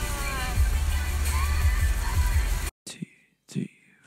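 Heavy rain on a moving car, heard inside the cabin as a steady hiss over low engine and road rumble, with a song playing over it. It cuts off suddenly a little under three seconds in, leaving near silence broken by a few brief soft sounds.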